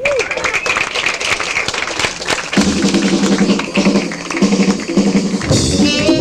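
Club audience applauding and cheering after the band is introduced, then about halfway through a jazz quintet starts the tune with a few short repeated chord figures, and the full band with electric bass and drums comes in near the end.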